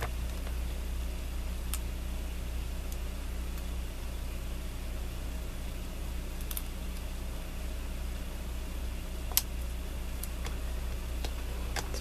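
Steady low hum of room noise, with a few faint clicks and taps from small paper pieces being handled and pressed onto a card on a cutting mat; one sharper tap about nine seconds in.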